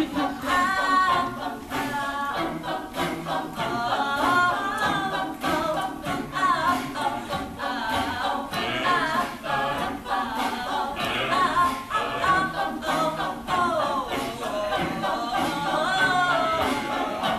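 Mixed-voice a cappella group singing unaccompanied: several sung parts moving together over a repeating low bass line.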